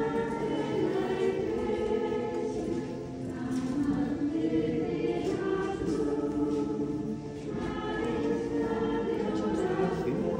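A choir singing a hymn in long held phrases, with short breaks about three and seven seconds in.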